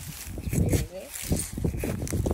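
Wind buffeting the microphone in a low rumble, with a hand trowel scraping and crunching into dry, crumbly garden soil.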